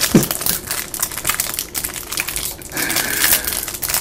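Trading card pack wrapper crinkling and crackling as it is handled and opened by hand, a dense run of small crackles.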